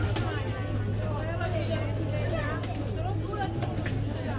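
Indistinct background voices talking over a steady low hum, with a few faint clicks a little before three seconds in.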